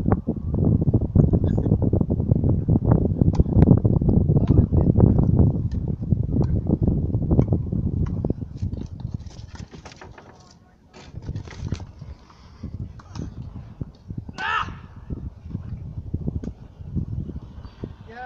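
Wind rumbling on the microphone for the first half, dying away about ten seconds in. After that, tennis play is heard faintly outdoors: scattered sharp ticks of racket on ball, and a brief shout about three-quarters of the way through.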